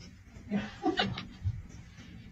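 A golden retriever making a few short, soft vocal sounds, with a soft low thump about a second and a half in.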